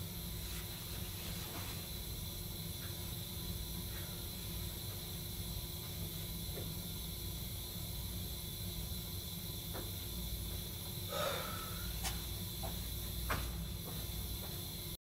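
Steady low hum and hiss of room tone in a basement utility tunnel, with a few faint footsteps on the concrete floor near the end.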